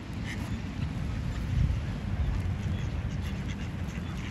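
Mallard ducks quacking faintly now and then, the clearest call about a third of a second in, over a steady low rumble.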